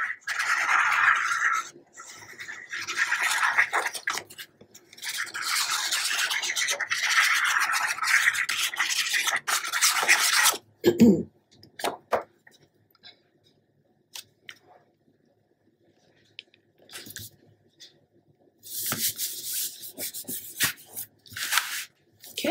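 A squeeze bottle of craft glue with its applicator tip dragged across paper as glue is laid down, in a run of scratchy strokes lasting about ten seconds. This is followed by a single knock, a quiet stretch, and then paper being rubbed down by hand near the end.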